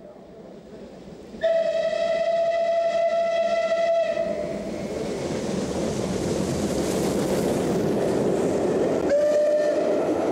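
Steam whistle of a rebuilt Bulleid Merchant Navy class Pacific: one long steady blast starting about a second and a half in. It is followed by the noise of the locomotive and its coaches running past, which builds and then holds, and a second, shorter whistle near the end.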